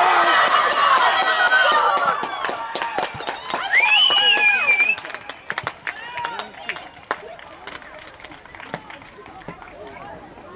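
Several voices shouting and cheering as a goal is scored, with one long high yell about four seconds in. The shouting dies down after about five seconds, leaving scattered calls and a few sharp clicks.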